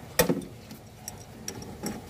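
Metal clicks of an adjustable wrench against the pipe-fitting nuts on a split-type air conditioner's outdoor unit as the fittings are being undone: one sharp click about a quarter second in, then a few lighter ticks.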